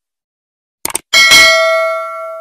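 A quick double mouse-click sound effect a little under a second in, then a bell ding that rings with several clear tones and slowly fades: the notification-bell sound of a subscribe-button animation.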